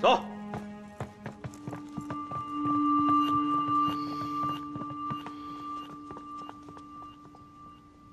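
Footsteps of a group of people walking off, many quick irregular clicks, under soft held background music.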